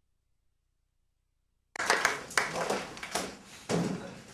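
Dead silence, then about halfway through the sound cuts in abruptly with room noise in a classroom: a series of sharp knocks, clatter and rustling of people moving and handling things.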